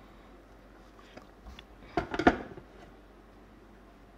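A stainless steel mixer jar knocking a few times in quick succession about two seconds in, after a couple of small clicks, as it is handled over ceramic mugs while the last of the blended apple juice is poured.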